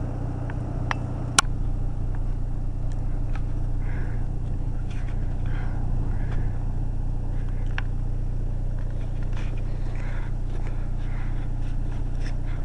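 A car engine idling with a steady low hum, with a few sharp clicks over it, the loudest about one and a half seconds in.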